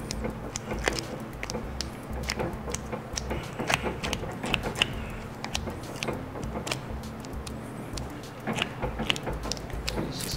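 Handling noise from gloved hands packing firestop putty into a steel sleeve around a bundle of plastic-jacketed data cables: irregular small clicks and rustles as the cables shift and knock against each other and the sleeve.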